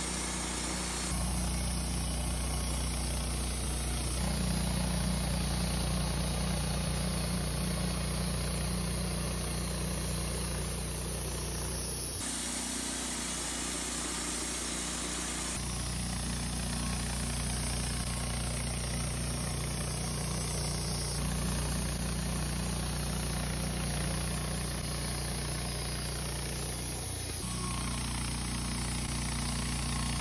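Wood-Mizer LT15 Start portable band sawmill running steadily while its band blade cuts boards from a Douglas fir log. The sound shifts abruptly a few times, about a second in and again around twelve and sixteen seconds.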